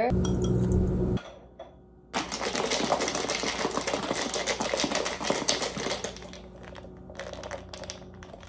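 A lidded glass mason jar shaken hard to mix a matcha latte: about four seconds of rapid rattling and sloshing, tapering into a few stray clicks. Before it, a short low hum fills the first second.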